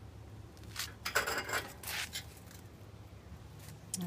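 Short scrapes and rattles of things being handled: a cluster about a second in and a couple more near the end, over a low steady hum.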